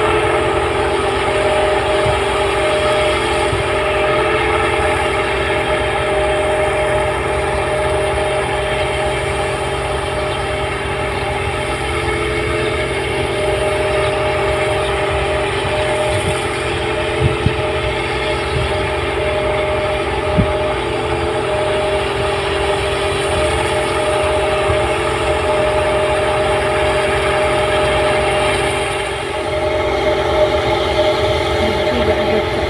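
New Holland 8060 combine harvester running steadily while harvesting rice, a continuous engine drone with a steady mechanical whine from the threshing machinery.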